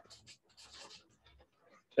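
Faint strokes of a felt-tip marker on flipchart paper, a few short scratchy rubs in the first second.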